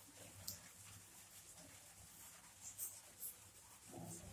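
Faint scratching of chalk writing on a cement floor, in a few short strokes about half a second in and again near three seconds in.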